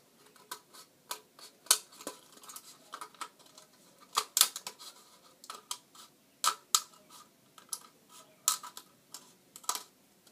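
Small scissors snipping into a thin plastic cup: a string of sharp, irregular snips, one or two a second.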